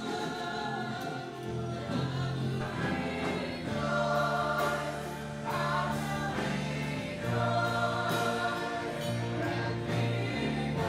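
Live gospel worship music: a church band with guitars plays held bass notes under a group of voices singing together.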